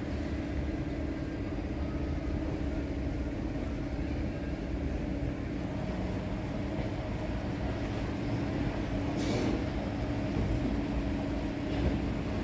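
Steady ambience of a large airport terminal hall: a constant mechanical hum over low rumble, with a brief noise about nine seconds in and a sharp knock near the end.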